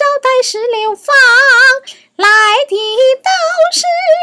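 A woman singing a Peking opera passage unaccompanied, in a high voice with wide vibrato and notes that slide up and down, phrases broken by a short pause about two seconds in.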